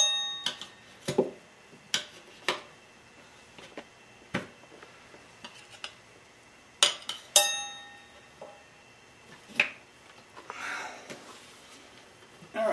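Tire irons clinking and knocking against a spoked motorcycle wheel rim while a tire bead is levered on: a series of sharp metallic clicks, the loudest right at the start and two about seven seconds in that ring briefly, with a short rustle near the end.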